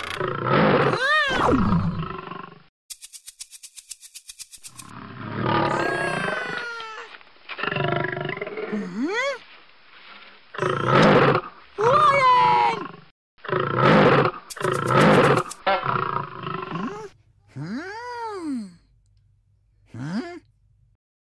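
Cartoon animal sound effects: a series of roaring cries and squeals that bend up and down in pitch, with a fast rattle about three seconds in.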